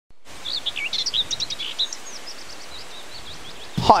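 Several birds chirping outdoors, many short calls sliding up and down in pitch, busiest in the first two seconds and then thinning out, over a steady background hiss.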